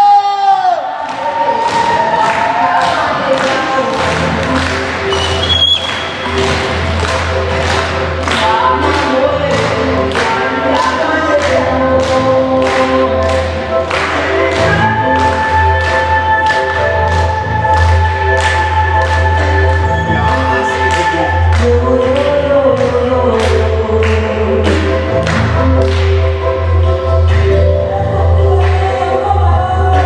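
Dance music played over a sound system: a steady drum beat with a deep bass line coming in about four seconds in, and group singing over it. A long held note sounds from about fourteen to twenty-one seconds in.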